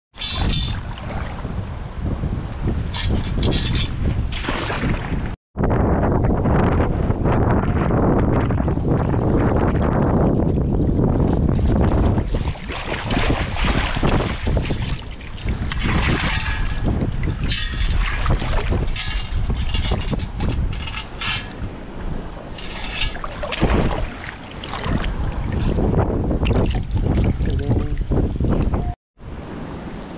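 Wind rumbling on the microphone, with water splashing and sloshing in bursts as a perforated stainless steel sand scoop is shaken in shallow sea water to sift sand. The sound drops out briefly twice, at about five seconds and near the end.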